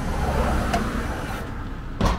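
Electric hydraulic pump of a van's tail lift, running steadily while the lift is worked, with a couple of faint clicks.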